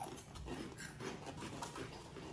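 Several people chewing Flamin' Hot Cheetos together, a faint, irregular crunching.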